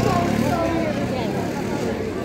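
Crowd of onlookers talking over one another, many overlapping voices in a loud, steady hubbub.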